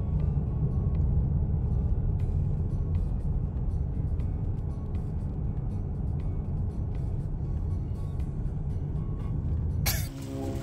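Background music over the low, steady rumble of a car driving.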